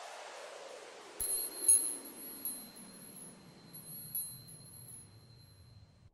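Logo-animation sound effect: a falling whoosh fades out, then from about a second in a run of bright chime-like tinkles rings over a held high tone, the tinkles thinning out towards the end.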